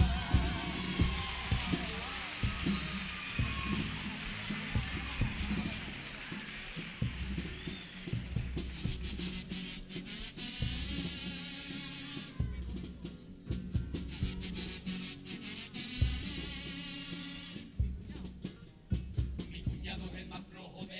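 Theatre audience applauding and whistling for several seconds as a song ends, dying away about eight seconds in, while the comparsa's drums keep up a rhythm of low strikes and sharp clicks.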